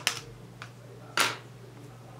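Small clicks and a short rustle from handling glass seed beads and a fine beading needle: a sharp click at the start, a faint tick, then a brief scratchy rustle a little after a second in, over a low steady hum.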